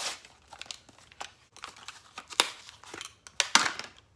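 Plastic cosmetic packaging being handled close up: scattered crinkles, rustles and small clicks, with the sharpest clicks near the end.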